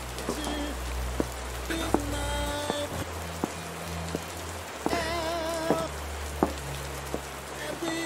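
Steady rain with scattered sharp drips, laid over slow, sad soundtrack music with deep, held bass notes. About five seconds in, a high held note with a wavering vibrato comes in.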